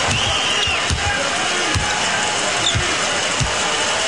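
A basketball being dribbled slowly on a hardwood arena floor, about one bounce a second, under steady arena crowd noise. A sneaker squeaks once near the start.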